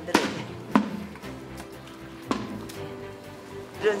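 A hatchet chopping through a large duck on a cutting board: three sharp strikes, one at the start, one under a second in and one past the middle. The duck is six months old and too tough for a knife. Background music plays under the strikes.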